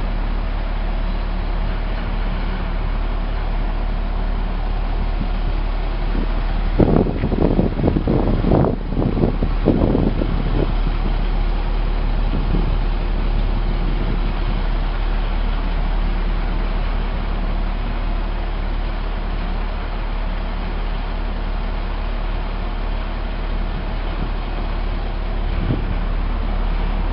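The diesel engine of a 2003 International 7400 rear-loading garbage packer truck running steadily at idle. Between about 7 and 11 seconds in, a louder, irregular stretch of clatter rises over it.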